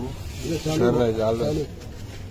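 A man's voice talking for about a second, in words the recogniser did not catch.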